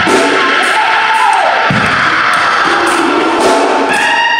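Church organ playing gospel music, with crowd noise from the congregation mixed in.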